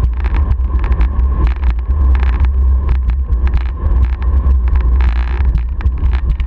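Heavy rumble of wheels rolling fast over rough asphalt, with wind buffeting the microphone and frequent sharp clicks as the wheels cross cracks and bumps in the pavement.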